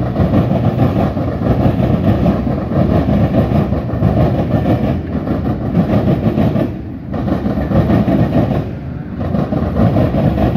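Freight train cars rolling past on the rails: a loud, steady noise of wheels on track that dips briefly about seven and nine seconds in.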